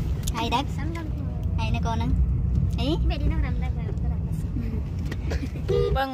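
Steady low rumble of a car, heard from inside the cabin, with people talking over it; the rumble drops away suddenly at the end.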